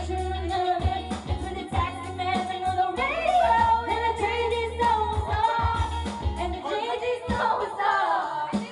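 Karaoke-style singing into a handheld microphone over a pop backing track with a steady bass, the microphone passed between singers, a woman's voice and a man's. The bass drops out about six and a half seconds in.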